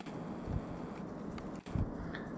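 Quiet room tone with a few faint low thumps from a camera being handled as it is moved in close.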